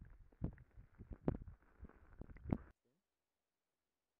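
Muffled underwater rumble of river water moving around a submerged camera, with several dull knocks. It cuts off abruptly about two-thirds of the way through.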